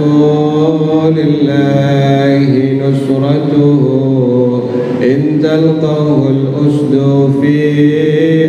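A man chanting Arabic devotional verse into a microphone, in long, drawn-out notes that waver up and down in pitch.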